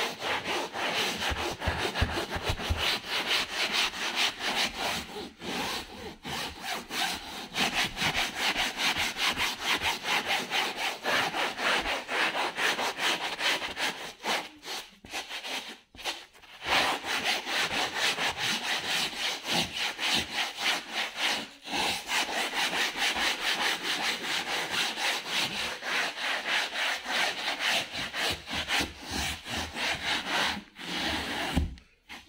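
Stiff hand brush scrubbing fabric sofa upholstery in fast, even back-and-forth strokes. Brief breaks come about five seconds in and near twenty-one seconds, and a longer one around fifteen seconds.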